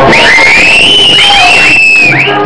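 Soundtrack music: a high, wavering tone that glides slowly up and down, with short rising swoops over it.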